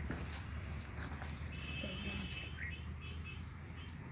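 A small bird calling: a quick run of about five short, high chirps about three seconds in, with a thin, steady, higher note a second earlier.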